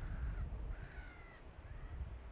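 A bird calling three times, short calls that rise and fall in pitch, over a steady low rumble.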